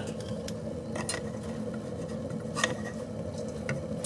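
Steady low hum of a running wood-pellet rocket stove boiler, with a few light clicks and taps scattered through.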